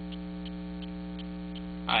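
Steady electrical mains hum on the recording, with a faint tick repeating nearly three times a second.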